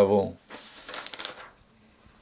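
Pages of a thick hardback book riffled through by hand, a papery flutter lasting about a second.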